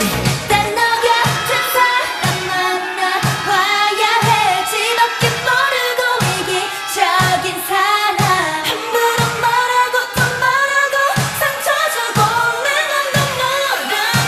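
Upbeat K-pop dance-pop song sung by a female group, with a steady kick-drum beat about twice a second under the vocal melody.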